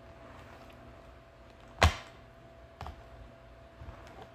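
A sharp knock about two seconds in, then two softer knocks about a second apart, like something set down or tapped on a tabletop, over a faint steady hum.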